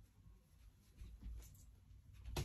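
Near silence: room tone, with a faint low rumble starting about a second in.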